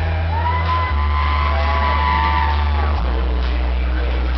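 Loud live dance music over a stage PA, with a heavy steady bass line and long, drawn-out vocal notes sliding in pitch on top.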